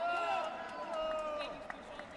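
Two drawn-out, high-pitched yells during a close-range taekwondo exchange, the first right at the start and the second about a second in, with a sharp tap near the end.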